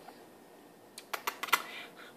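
A quick run of about six light, sharp clicks about a second in, typical of a cat's claws ticking on a tile floor as it walks.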